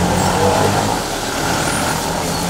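Isuzu Elf light truck's engine running steadily as the truck creeps with its front wheel rolling through muddy, water-filled potholes.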